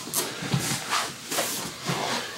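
Two wrestlers shifting and rolling against each other on a foam mat: about five short rustling scuffs of bodies and clothing.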